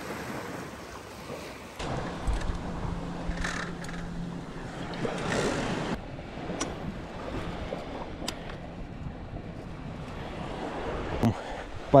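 Small waves washing onto a sandy beach, with wind buffeting the microphone. A few sharp clicks in the second half.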